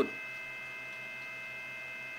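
Steady electrical hum with several thin, high whining tones held constant, the kind given off by powered electronics such as a switch-mode power supply.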